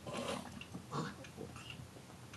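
A dog barking twice, about a second apart, short and somewhat muffled bursts.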